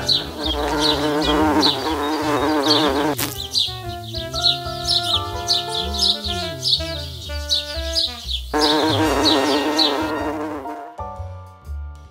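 A housefly buzzing, its pitch rising and falling as it flies about, over background music.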